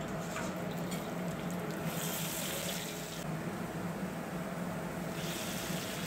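Chopped garlic and cumin seeds frying in hot oil in a steel wok: a steady sizzling hiss.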